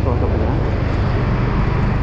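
Motorcycle riding along a city street: a steady low engine and road rumble, with wind noise on the microphone.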